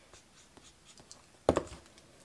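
Faint scratchy strokes of an alcohol marker nib colouring on paper, then one sharp click about one and a half seconds in as the markers are changed over.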